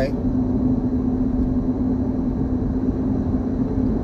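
Steady low rumble of a car heard from inside the cabin, with one constant hum held at the same pitch throughout.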